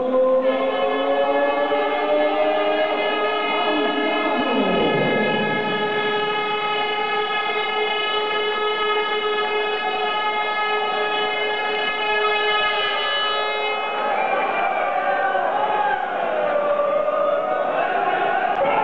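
A horn-like tone held on one steady pitch for about thirteen seconds, with a falling glide about four to five seconds in, and crowd voices after it stops.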